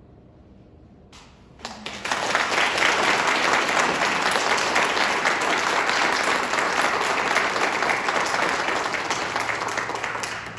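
Audience applause that breaks out about a second and a half in, as the last ringing notes of a harp, violin and cello trio fade, and goes on steadily.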